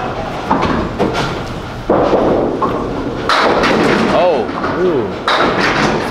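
A candlepin bowling ball hits the wooden lane with a thud about two seconds in, rolls, then crashes into the thin candlepins and sets them clattering, with voices in the bowling hall.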